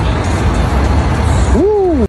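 Loud, steady city street traffic noise with a heavy low rumble. Near the end a short voiced sound rises and then falls in pitch, and then everything cuts off abruptly.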